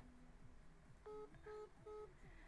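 Three faint, short electronic beeps of one steady pitch, starting about a second in and coming in quick even succession, over near-silent room tone.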